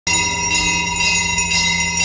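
Temple bell rung continuously during an aarti lamp offering: quick repeated strokes that keep a dense ringing of overlapping metallic tones going.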